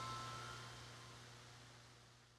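The last ringing chime-like note of a short music sting dies away in the first half-second, and the sound fades steadily toward silence over a low steady hum.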